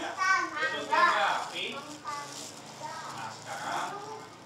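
Young children's high-pitched voices talking and calling out over one another, loudest in the first second or so.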